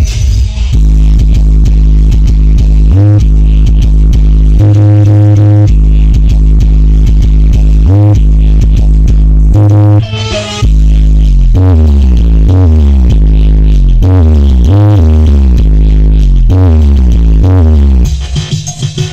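Very loud bass-heavy electronic music from a large outdoor street sound system: long deep bass notes, then a run of short sliding bass notes in the second half, with a brief break about ten seconds in.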